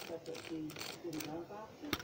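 Small plastic Plarail toy turntable being turned by hand, with a few light clicks, the sharpest near the end.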